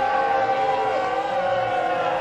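Live rock concert recording with several long, steady held notes that bend slightly, one high pitch the loudest.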